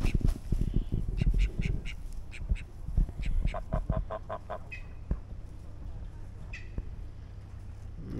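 Domestic geese calling in quick runs of short honks, several runs in the first five seconds and a few single calls after. In the first two seconds a goose flaps its wings, a low fluttering rumble under the calls.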